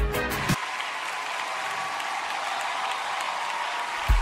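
A music cue with deep, falling bass hits cuts off about half a second in, giving way to steady audience applause under a faint held note.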